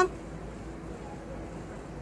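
Steady low hum and hiss of room tone with no distinct event; the brush work on the nail makes no audible sound.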